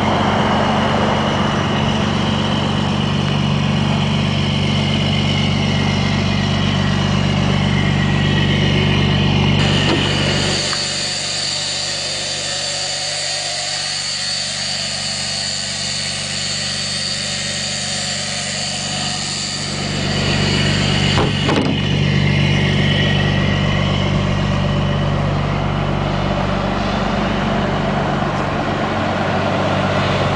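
The 5.9-litre Cummins straight-six diesel of a 1998 Blue Bird TC/2000 school bus idling steadily. For about ten seconds in the middle the deep engine note drops away, leaving a higher hiss and faint whine before the idle comes back.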